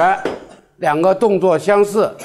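Speech only: a voice talking, with a short pause a little under a second in.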